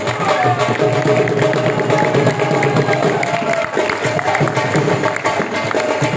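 Live Saraiki Jhumar folk music: a dhol drum beating a steady rhythm under a sustained, wavering melody from a been pipe.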